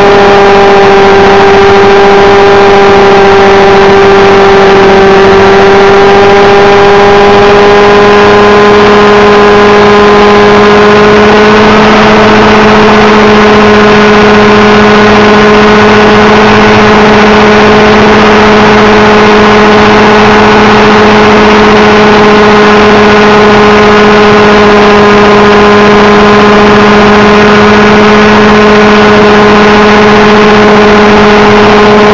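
Thunder Tiger Raptor radio-controlled helicopter in flight, its small glow-fuel engine and wooden-bladed rotor running steadily at close range, heard from a camera on the airframe. The pitch dips slightly a few seconds in, then settles a little higher and holds.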